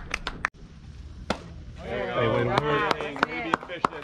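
Sharp clicks at an uneven pace, with a brief dropout about half a second in, then spectators' voices talking over them from about two seconds in.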